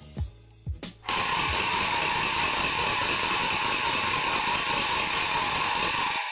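Music with plucked notes and a few sharp percussive hits dies away. About a second in, a loud, steady, harsh rattling noise starts abruptly. It holds level until it fades out at the very end.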